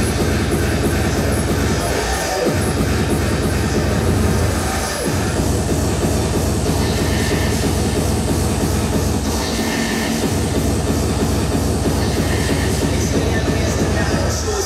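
Loud hardcore electronic music played through a big hall's sound system, a dense distorted wall of sound. The bass drops out briefly in falling sweeps about two and a half, five and ten seconds in.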